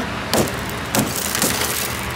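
Benchmade SOCP window breaker striking a car's tempered glass roof panel. A sharp crack comes about a third of a second in as the glass shatters, followed by the crackle of small glass cubes crumbling and a couple of smaller clicks.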